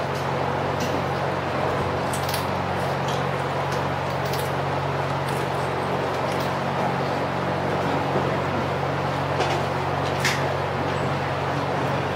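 Steady room noise: a low, even electrical-sounding hum under a broad hiss, with a few faint clicks, the clearest about ten seconds in.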